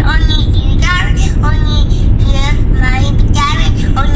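Steady low rumble of road and engine noise inside a moving car's cabin, with a child's high voice over a phone speaker on top.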